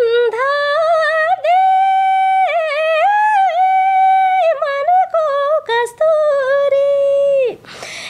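A woman singing a Nepali folk song (lok geet) unaccompanied, in a high voice: long held notes joined by quick ornamental turns, with short breaths between phrases.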